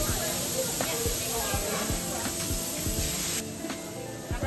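Espresso machine steam wand hissing steadily, cutting off suddenly about three and a half seconds in.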